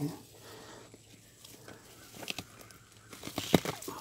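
Faint rustling and crackling of plant leaves brushing against the handheld camera, with a few sharp clicks, the loudest about three and a half seconds in.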